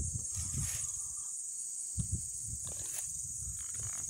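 Steady high-pitched chorus of insects, with low dull thuds of footsteps on grass near the start and again from about two seconds in.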